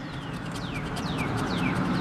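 Scratch-off lottery ticket being scraped with a handheld scratcher tool, a scratching sound that grows louder, with a bird giving a run of short falling chirps over it.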